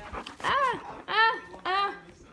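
Small dog barking three times in quick, high-pitched yaps, excited play barking while being teased with a toy.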